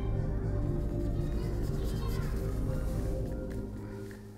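Background music with steady held tones; its bass drops out near the end.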